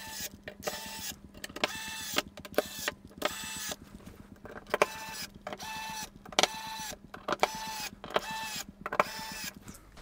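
Electric screwdriver driving fan screws into a radiator in a string of short runs. The motor whines for about half a second each time and drops in pitch as it stops, about a dozen times.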